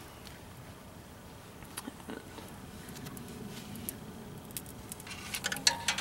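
Faint crackling and ticking from a freshly lit kindling fire and burning firestarter wrapper in the open firebox of a camping wood stove, with a denser run of sharp clicks and rustling near the end.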